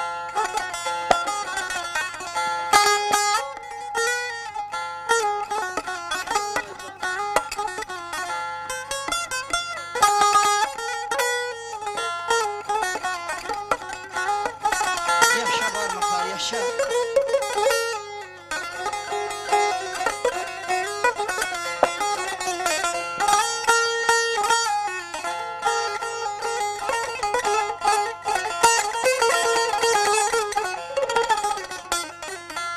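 Solo Azerbaijani saz, a long-necked lute, played with a pick in fast, dense plucked and strummed runs.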